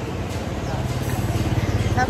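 Street traffic noise with a motorbike engine running close by, growing slowly louder.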